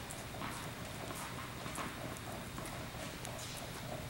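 Faint, evenly spaced taps on an indoor tennis court, a little more than one a second, over a steady low hum.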